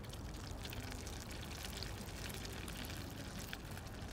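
Egg-dipped, breadcrumbed potato cutlet frying in hot oil in a pan: steady sizzling with dense crackling.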